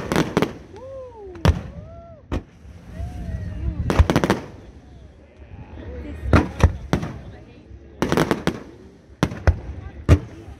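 Aerial fireworks bursting: a string of sharp bangs every second or so, some coming in quick clusters of two or three, over a low background rumble.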